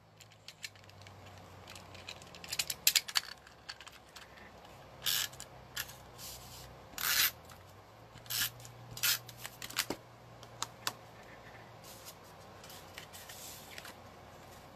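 Handheld adhesive tape runner being handled and drawn across patterned paper in a series of short scratchy strokes, with light paper rubbing between them.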